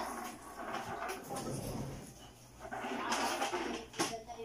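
Plastic monobloc chair being lifted and moved, scraping on the floor, with a louder scrape about three seconds in.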